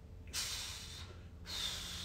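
A man breathing hard while straining to hold an isometric push-pull against a braced stick: two forceful breaths of about a second each, the second starting about halfway through.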